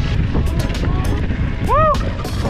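Mountain bike riding over a dirt trail, heard from a bar-mounted camera: a steady rumble of wind on the microphone and tyre noise, with constant small rattles and clicks from the bike over the rough ground. Near the end a short pitched sound rises and falls.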